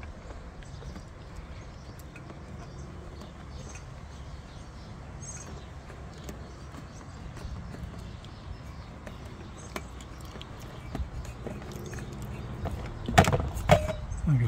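Faint rustling and light clicks of a dashcam power cable being pushed by hand into the seam of a van's windshield-pillar trim, over a steady low background rumble. A few sharper clicks come near the end.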